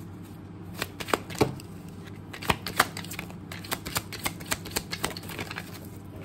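A tarot deck being shuffled by hand: a run of quick, irregular card clicks and flutters that starts about a second in and comes thicker in the second half.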